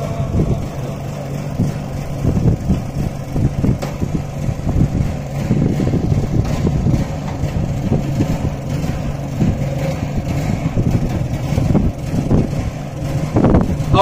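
Steady low rumbling outdoor background noise with a faint steady low hum underneath; no voices.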